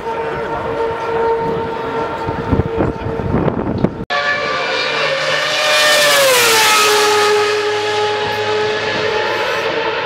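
Lotus Renault R31 Formula One car's V8 engine at high revs passing by. Its note drops in pitch as it goes past, about six to seven seconds in, and is loudest there, then holds a lower steady whine. Before an abrupt cut about four seconds in, a steady high engine note.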